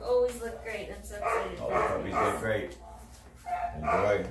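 Rhodesian Ridgeback puppy yipping and whining in a string of short calls, with a person talking.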